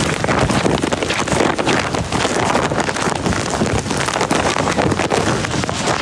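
Rain falling steadily on a wet pavement, with wind buffeting the microphone in loud, uneven gusts.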